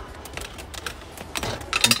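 Clear plastic clamshell package of screwdriver-style nut drivers clicking and rattling as it is pulled off a metal display peg, with a quick cluster of clicks near the end.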